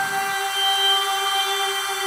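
Suspense background score: a sustained synthesizer chord of several steady tones, held throughout, with a low noisy layer underneath that cuts off about a third of a second in.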